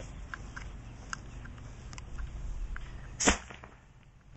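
A homemade PVC pneumatic spud gun fires a potato at 60 psi: one sharp bang about three seconds in, with a brief ring after it. A few faint clicks come before it.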